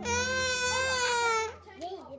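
A baby crying: one long wail of about a second and a half, falling slightly in pitch, that then breaks off.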